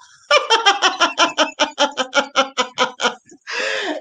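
A woman laughing heartily in a long run of quick, even "ha" pulses, about seven a second, then a short breathy sound near the end.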